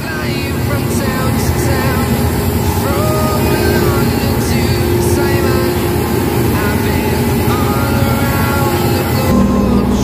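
Steady engine and road noise from inside the cab of a TAM VivAir airport apron bus as it drives.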